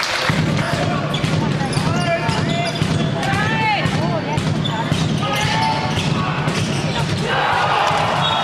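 Indoor handball play: a handball bouncing on the hall floor with repeated knocks, and sports shoes squeaking on the court. Players call out, all ringing in the hall, over a steady low hum.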